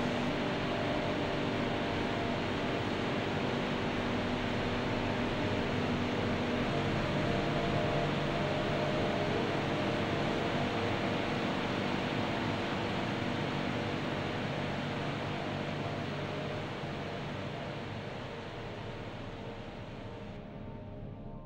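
Steady machine hum and hiss of large fan or air-handling plant running in the hangar. Several hum tones sit under the hiss and shift a few seconds in, and the sound slowly fades over the last few seconds.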